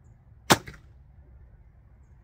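Samick Sage takedown recurve bow shot: the bowstring snaps forward on release with one sharp crack about half a second in, followed by a brief rattle as the string and limbs settle.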